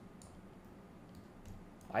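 A few faint computer mouse clicks, short and sharp, over quiet room tone.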